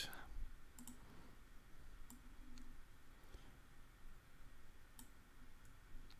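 Faint computer mouse clicks, a handful spread unevenly over a few seconds, over low room tone.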